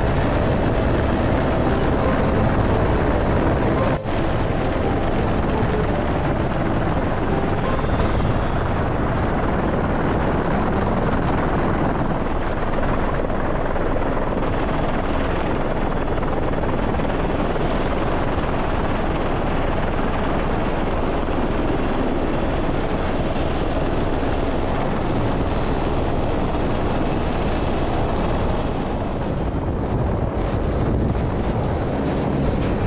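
Helicopter rotor and engine noise heard from on board with the cabin door open, loud and steady, with a brief dip about four seconds in.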